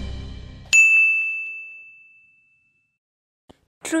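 A single bright chime from a TV channel's logo ident, struck just under a second in and ringing out and fading over about two seconds, after the tail of a music sting dies away.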